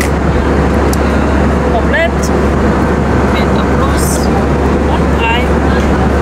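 Steady, loud vehicle running noise, a deep rumble under a broad rushing hiss, with a few faint voices in the background.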